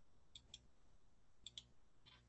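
Near silence with faint short clicks in two quick pairs, about half a second in and again about a second later, over a low hum.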